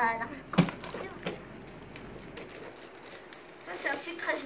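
Gift-wrapping paper crinkling and tearing in short crackles as a present is unwrapped, with one sharp knock about half a second in.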